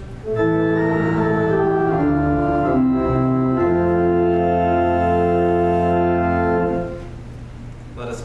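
Church organ playing a short run of sustained chords that change several times, closing on a long held final chord that stops about seven seconds in.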